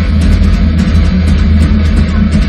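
Metal band playing live, heard from beside the drum kit: dense, rapid drumming with kick drum and crashing cymbals over heavy distorted guitars, loud and unbroken.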